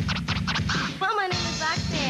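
Hip hop track with a DJ scratching a vinyl record on a turntable in quick strokes over a drum beat. About halfway through, a sliding, voice-like pitched sound comes in over the beat.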